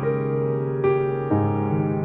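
Slow, gentle solo piano music, with a few new notes and chords struck and left to ring.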